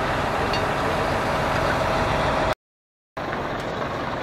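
Heavy diesel truck engine running steadily at idle, with a steady whine over it. The sound cuts out for about half a second a little past halfway, then the engine noise picks up again.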